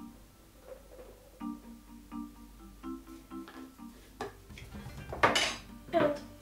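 Background music with a repeating pattern of notes, over light clinks and taps of a tablespoon against a cocoa tin and a plastic mixing bowl as cocoa powder is spooned in. A louder clatter comes a little after five seconds in.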